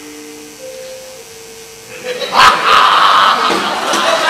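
Soft held notes from the gamelan accompaniment. A little past halfway, several performers break into a loud shout together, a battle-cry-like outburst that carries on.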